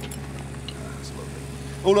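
Mechanical excavator's engine idling steadily, a low even hum, after the machine has been halted at the trench edge. A voice starts near the end.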